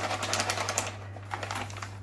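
A plastic cat-food bag crinkling and rustling as it is handled. The crackle is densest in the first second and turns to a few scattered crackles after that.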